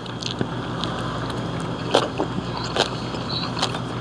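Steady background noise with a low hum, broken by a few light clicks of tableware at the table.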